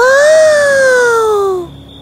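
A girl's voice exclaiming one long, drawn-out "Woah!" in wonder, the pitch rising briefly and then falling slowly for about a second and a half.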